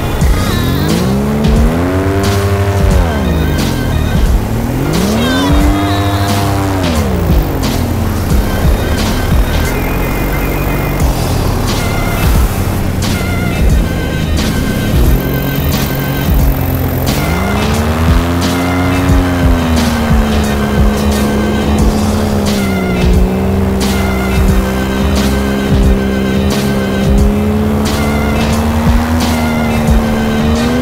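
Music with a steady beat, over a pitched line that sweeps up and down in pitch several times before settling into a held tone in the last third.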